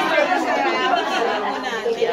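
Many women talking at once in a crowded room: overlapping chatter with no one voice standing out.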